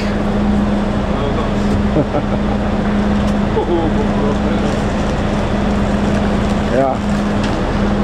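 A parked coach running at idle with its front door open: a steady engine and machinery hum with one constant drone that cuts out shortly before the end. Faint voices.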